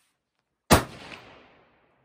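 A single rifle shot, sharp and loud, ringing out and dying away over about a second, with a fainter echo about half a second after it.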